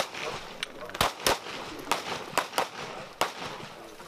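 Pistol shots on an open range, about seven at irregular spacing, the loudest a quick pair about a second in.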